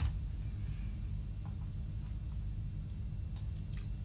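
Quiet room with a steady low hum, a sharp click right at the start and a few faint clicks near the end, from a computer being operated during a search.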